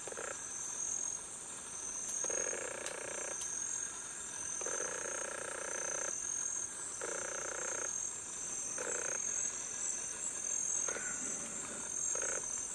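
Steady high-pitched insect chorus, with a lower animal call of up to a second or so repeating at uneven gaps every one to two seconds.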